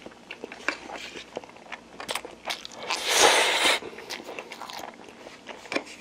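Chewing a mouthful of Indomie instant noodles close to the microphone, with many small wet mouth clicks, and a louder rushing noise lasting under a second about halfway through.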